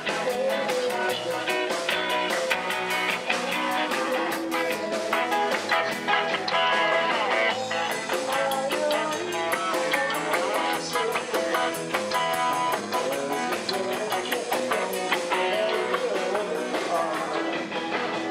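Live band playing: electric bass and guitar over a drum kit with a steady cymbal beat.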